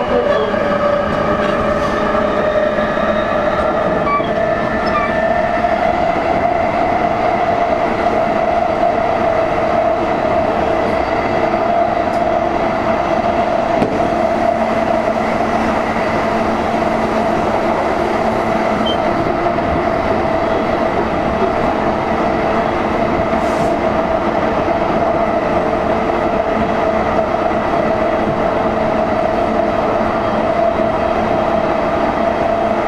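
Running noise of a JR East E233-series electric motor car (MoHa E233) heard from inside the car: a steady traction-motor whine over continuous wheel-on-rail rumble. The motor tone rises a little over the first several seconds as the train gathers speed, then holds steady at cruising speed.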